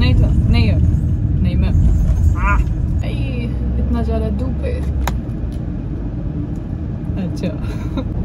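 Steady low rumble of a car running, heard from inside the cabin, easing slightly after a sharp click about five seconds in.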